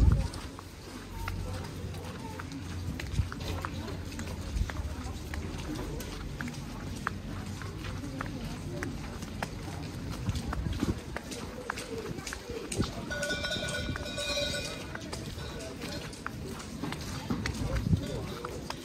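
Outdoor street ambience in light snowfall: footsteps on wet, snow-dusted pavement with faint voices of passers-by. A brief high-pitched call sounds about three-quarters of the way through.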